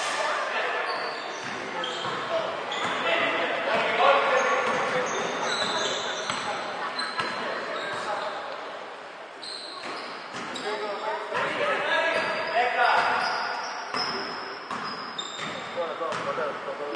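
Basketball game on an indoor hardwood court: the ball bouncing as it is dribbled, with players' voices calling out, all echoing in a large gym hall.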